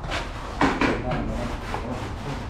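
Repeated rasping, rubbing strokes of a plastering tool worked over cement plaster, with two louder strokes just over half a second in.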